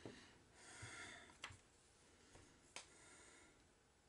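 Near silence: a faint breath, then two small, faint clicks about a second and a half and nearly three seconds in.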